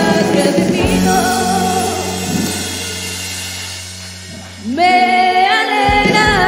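A Christian worship song sung by a woman with acoustic guitar, ending on a long held chord that slowly fades. Near the end a new song starts, a voice sliding up into a strong sung note.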